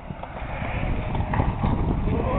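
Skateboard wheels rolling on a concrete bowl, a steady rumbling clatter of small ticks with one sharper knock about a second and a half in.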